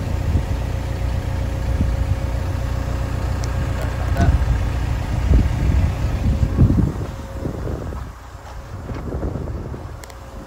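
Caterpillar 320 Next Gen excavator's diesel engine idling with a steady low drone, heard from beneath the machine, with a few louder knocks in the middle; the drone drops in level about eight seconds in.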